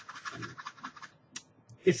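Light, rapid scratching for about a second, followed by a single click.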